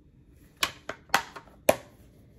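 Black plastic two-disc DVD case being handled and snapped shut. It gives a quick series of about five sharp plastic clicks over a second, three of them loud.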